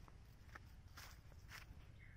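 Footsteps on dry fallen leaf litter: three faint crunching steps about half a second apart, over a low steady rumble.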